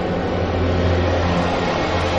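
Disaster-film soundtrack: a loud, steady deep rumble with sustained dramatic music over it.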